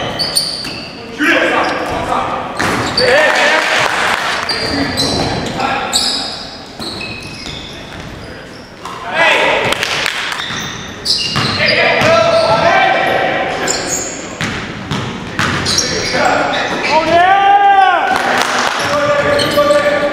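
Indoor basketball game on a hardwood gym floor: the ball bouncing, sneakers squeaking in short squeals near the end, and players' voices, all echoing in the large hall.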